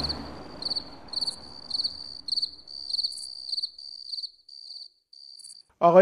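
Cricket chirping: a steady run of short, high, pulsed chirps, growing fainter near the end. The tail of the intro music dies away in the first second or two.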